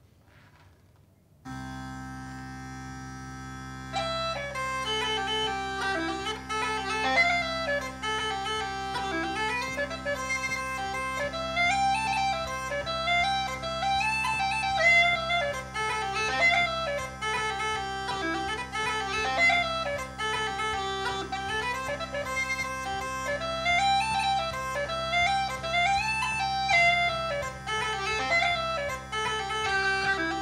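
Uilleann pipes starting up: after a moment of near silence the drones come in with a steady hum about a second and a half in, and the chanter joins about four seconds in, playing an Irish slide melody over the drones.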